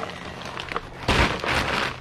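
Plastic shrink-wrap on a multipack of bottled water crinkling as it is handled. A few light clicks come first, then a burst of crinkling lasting most of a second, starting about a second in.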